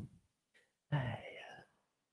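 A man muttering quietly under his breath, a short indistinct utterance about a second in, with dead silence around it.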